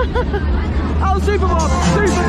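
Riders' voices shouting over loud fairground ride music while a Superbob ride runs, with a deep steady rumble underneath.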